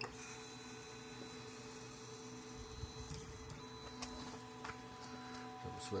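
Steady low electrical hum from a powered-up Creality CR-10S 3D printer standing idle, not yet printing, with a few faint clicks.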